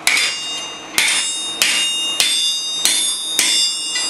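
A hand hammer strikes a punch held on red-hot steel on an anvil. There are six blows, a little over half a second apart, and each leaves a bright metallic ringing that carries on until the next.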